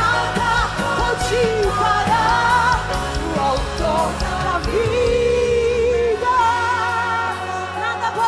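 A woman singing a Portuguese gospel worship song live into a microphone, backed by band music; her voice bends through a melody and holds one long note a little past the middle.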